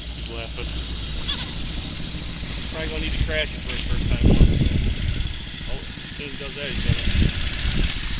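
Small mini bike engine idling steadily, with a couple of louder swells around the middle and near the end, under people's voices.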